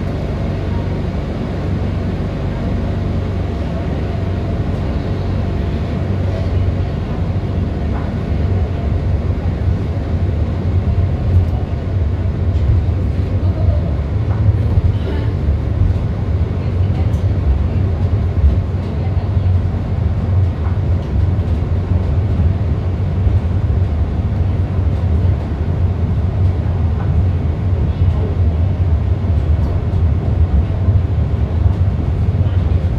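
Vallvidrera funicular car running down its track, heard from inside the car: a steady low rumble with a few faint clicks, growing slightly louder after about ten seconds.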